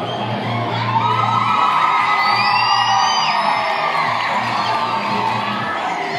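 Music with a steady bass line, with a crowd of children cheering and high whoops over it, loudest from about one to three seconds in.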